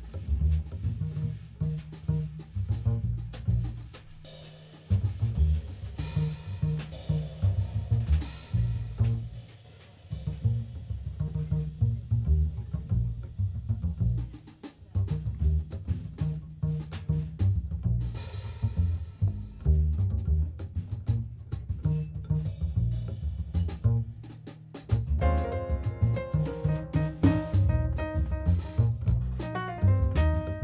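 Live jazz: an upright double bass and a drum kit play together, with a few short breaks. A piano comes in about 25 seconds in.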